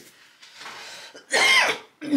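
A woman coughs once, loudly and briefly, about a second and a half in.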